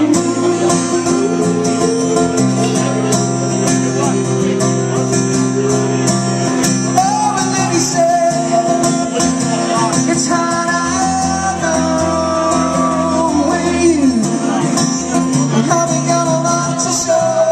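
Live acoustic guitar strummed, with a sustained melody line above it that changes note every second or so and slides between some notes.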